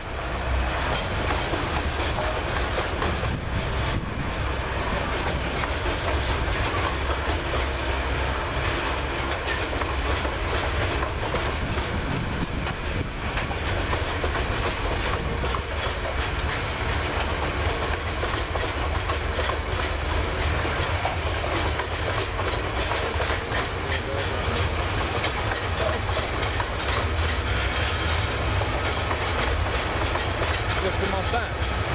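Freightliner bogie hopper wagons of a long freight train rolling steadily past, wheels clattering over the rail joints in a continuous clickety-clack.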